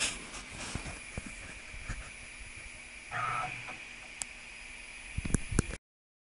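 CNC mill's servo-driven ballscrew axis making one short, half-second stepping move about three seconds in, over the machine's steady high-pitched hum, with scattered clicks and a few sharp knocks near the end. The sound cuts off abruptly just before the end.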